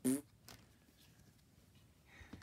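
One short spoken word, then faint handling of a stack of Pokémon trading cards, with a single soft click about half a second in as the cards are moved.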